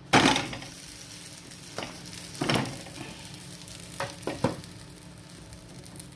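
Flatbread dough frying in a hot non-stick pan, a steady sizzle that flares loudly at the start as the bread is turned over onto the hot surface. Another flare of sizzle comes about two and a half seconds in, and a few sharp knocks near four seconds in.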